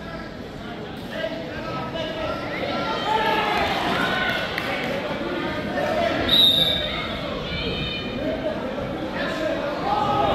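Many overlapping voices chattering in an echoing school gym, with a brief high squeak about six seconds in.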